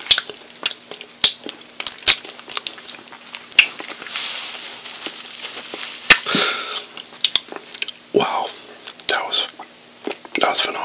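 Close-miked wet mouth sounds of licking hot-wing sauce off the fingers and smacking the lips, a string of sharp clicks. In the middle comes a softer stretch of rubbing as a cloth wipes the mouth.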